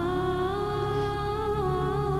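Background score: a single wordless melodic line like a hummed or sung voice, holding a long note with a slight drift in pitch over a steady low drone.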